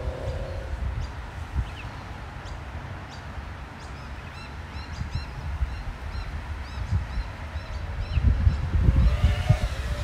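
Wind rumbling on the microphone, gusting louder near the end, with a bird chirping repeatedly in the background for several seconds in the middle.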